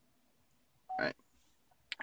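Chevy Bolt EV infotainment touchscreen giving a short beep as it is tapped, about a second in, with a sharp click just before the end; otherwise quiet.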